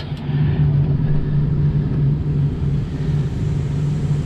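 Ford 6.0-litre Power Stroke turbo-diesel V8 idling, a steady low drone heard from inside the cab.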